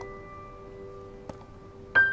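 Soft background piano music: a held chord slowly fading, with a new chord struck near the end.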